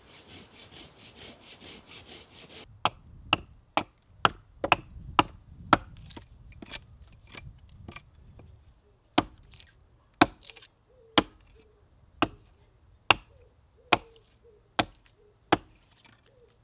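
Hatchet chopping into a short length of cedar branch held upright on a wooden chopping block, shaping it into a splitting wedge. A quick run of sharp chops starts a few seconds in, then steadier single chops come about once a second.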